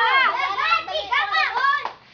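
Children's voices calling out during play, high-pitched and rising and falling.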